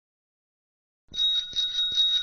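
Silence, then about a second in a bicycle bell rings with a few quick strikes and a steady ringing tone.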